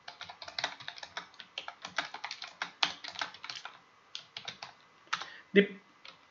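Typing on a computer keyboard: a quick run of keystrokes, a short pause a little past the middle, then a few more keys.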